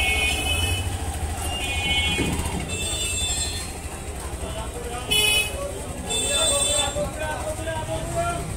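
Background noise: a steady low rumble with faint voices and several short high-pitched tones, of the kind heard from street traffic with horns.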